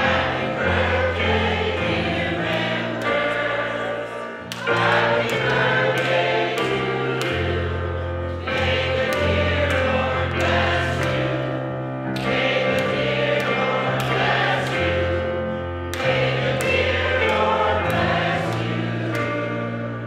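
Gospel choir singing with church organ accompaniment, long held bass notes under the voices.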